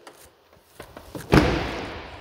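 A single sharp thump from a door of a 2017 Chevrolet Silverado 2500 double cab pickup, a little over a second in, trailing off briefly.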